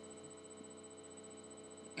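Faint, steady electrical hum with a thin high-pitched whine over it: the background noise of a webcam recording made without a headset microphone.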